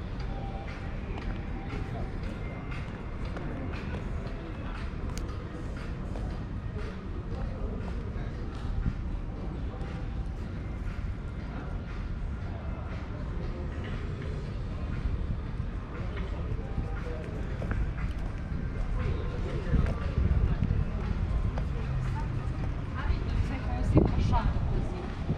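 Street ambience: background voices of passers-by and some music, over a steady low rumble that grows a little near the end.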